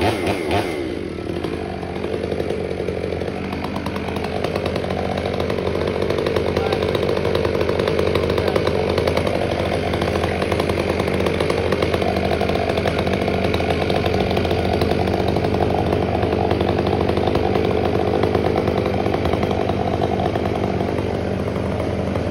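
Gas chainsaw cutting through a large tree trunk section. It wavers in pitch for about a second, then runs steadily under load through the cut.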